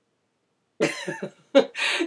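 About a second in, a woman laughs: a quick run of short bursts, then a sharper, breathy one.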